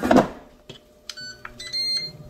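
A short clatter as the air fryer basket goes back in, then the air fryer's electronic control beeps: a few short tones followed by a longer, higher beep, with the fan humming faintly underneath.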